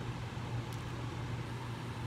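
Steady low background hum with faint even noise behind it: room tone during a break in speech.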